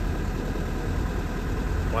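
Steady low rumble of the motor home's Isuzu diesel engine idling.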